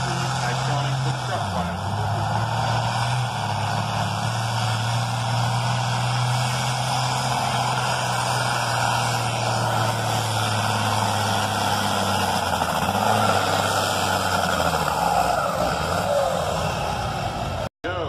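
Farm-stock diesel tractor engine under heavy load pulling the sled, a low steady drone that dips in pitch about a second and a half in and falls away near the end. Crowd chatter runs underneath.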